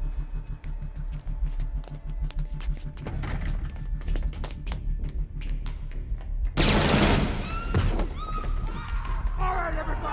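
Film soundtrack: a ticking, pulsing score that builds, then about six and a half seconds in a sudden loud burst of gunfire and shattering glass, followed by people screaming.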